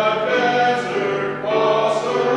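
A choir singing slow church music in long held notes, with a steady low note sustained underneath.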